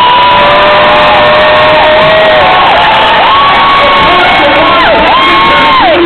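Convention audience cheering loudly, with several long, held whoops rising above the noise of the crowd.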